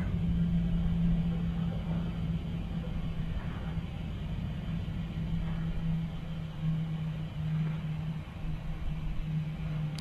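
A steady low hum over a low rumble, with no other events.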